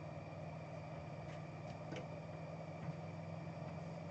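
Steady low background hum of room tone, with a few faint clicks of cards being handled.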